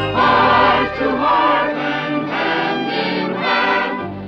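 Choir singing a Christmas song with orchestral accompaniment.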